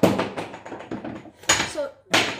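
A single sharp knock as a kitchen object is handled, dying away over about half a second, followed near the end by a short spoken word.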